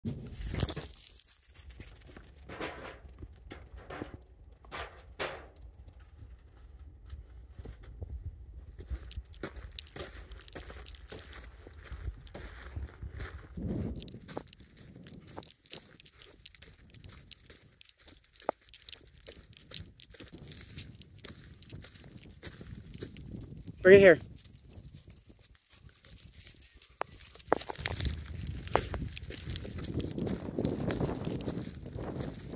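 Wind rumbling on the microphone ahead of an approaching rainstorm, with scattered light clicks and taps. A voice speaks briefly late on, the loudest moment.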